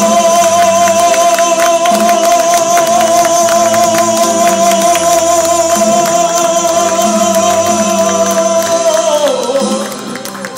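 Man singing a long held note into a microphone over a recorded karaoke backing track of a Latin pop ballad, with steady rhythmic accompaniment. The note slides down and breaks off about nine seconds in.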